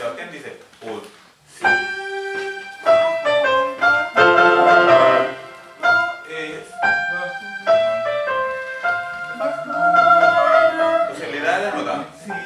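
Electronic keyboard with a piano sound playing a run of sustained chords, the chords changing every second or so, with a man's voice singing along over them. The first second and a half is softer and broken up before the chords come in.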